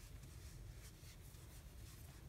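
Faint rustling and scratching of yarn drawn through and over a metal crochet hook as half double crochet stitches are worked, repeating softly a few times a second over a low steady room rumble.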